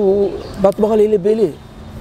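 A man's voice drawing out two long syllables at a level pitch, the second one falling away at the end, recorded close on a lapel microphone.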